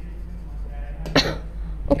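One short cough about a second in, over a low steady hum.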